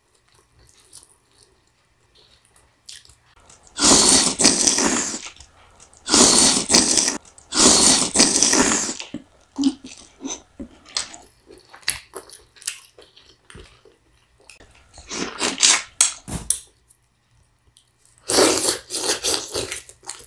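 Close-miked chewing of garlic-butter lobster tail meat. The wet mouth sounds come in several loud spells of a second or two, with quiet gaps between them.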